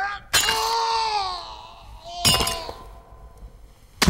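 A rock strikes an ice skate blade held against a tooth, giving a sharp metallic crack. A long cry of pain follows, slowly falling in pitch, and a second crack comes about two seconds later.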